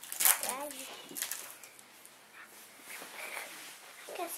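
A short, high-pitched child's voice early on, then light clicks and rustling of trading cards and foil pack wrappers being handled.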